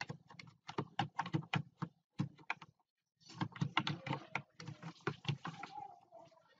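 Typing on a computer keyboard: quick, irregular keystrokes with a brief pause about three seconds in, then a denser run of keys.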